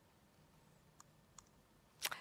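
Near silence with two faint, short clicks about a second in, less than half a second apart: the button of a handheld presentation remote being pressed to change the slide.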